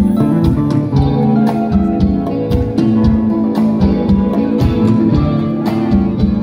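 Live band playing an instrumental passage with no vocals: guitar and bass over a steady drum beat of about two strokes a second.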